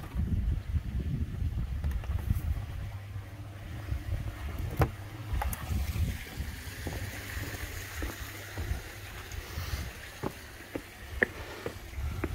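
Wind buffeting the microphone in an uneven low rumble, over the faint splashing of a garden koi pond's waterfall, with a few light clicks.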